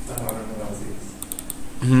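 Light clicking at a computer: a quick double click just after the start, then a rapid run of about four clicks about a second in.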